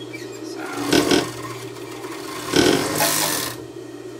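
Industrial overlock machine (serger) stitching and trimming fabric in two short bursts over the steady low hum of its motor. A brief hiss comes near the end.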